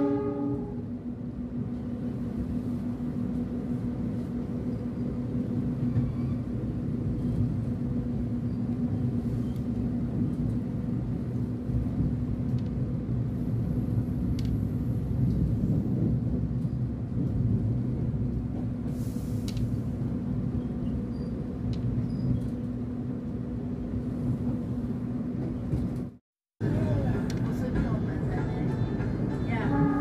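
Interior of a moving passenger train coach: a steady low rumble of the wheels on the track with a constant hum, as the train runs through a station without stopping. The sound cuts out suddenly for about half a second near the end.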